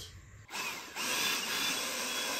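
Cordless 20 V leaf blower/vacuum, set up as a vacuum, switched on: its small electric motor and fan spin up with a rising whine about half a second in, then run steadily with a rush of air.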